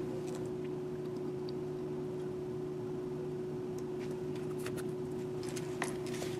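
Quiet kitchen room tone with a steady low hum, and a few faint light clicks near the end as a small plastic dressing bottle is handled.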